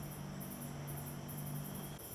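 Night insects such as crickets chirping in high, rapid pulses, with a steady low hum underneath.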